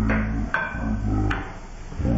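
Voices talking that the recogniser did not write down, with two short clicks, over a low steady hum.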